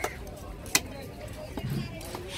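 Steel cleaver chopping through barracuda into a wooden block, two sharp strikes about three quarters of a second apart, the second louder.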